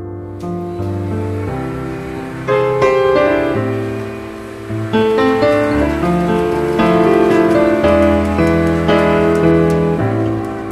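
Background piano music: sustained chords changing about once a second, stepping up in loudness about two and a half seconds in and again about halfway.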